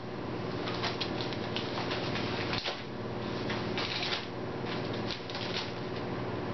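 Padded paper mailer envelope being torn and handled open, with irregular crinkling and rustling throughout and sharper crackles every second or so.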